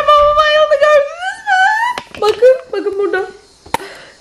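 A long, high-pitched scream of mock fright that rises in pitch about a second in, followed by a few shorter cries. A sharp click comes near the end.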